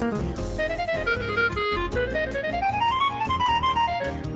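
Clarinet playing a jazz solo line over a bossa nova backing, climbing in a quick run of short notes through the second half.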